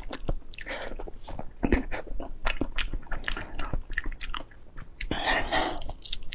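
Close-miked biting and chewing of braised pork knuckle skin and meat: many short clicks and mouth smacks, busier for about a second near the end.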